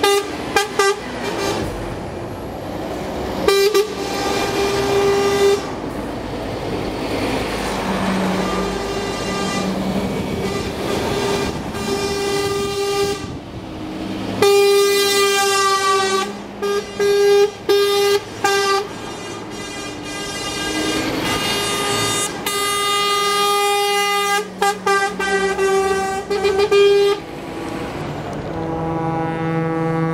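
A convoy of trucks rolling past at low speed, their horns sounding again and again: some long blasts, some quick runs of short toots, over the steady noise of engines and tyres. Near the end a deeper horn comes in.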